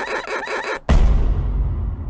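Edited-in comedy sound effect: a brief pulsing sound, then a sudden deep bass boom about a second in whose low rumble carries on.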